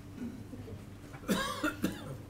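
A person coughing: two or three quick bursts about a second and a half in.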